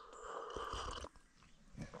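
A slurping sip of hot coffee from an enamel mug, lasting about a second, followed by a few faint clicks.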